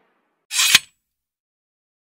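Short camera-shutter-like click sound effect, a brief burst of hiss ending in a sharp click about half a second in.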